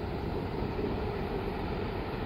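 A bus's diesel engine running, heard as a steady low rumble.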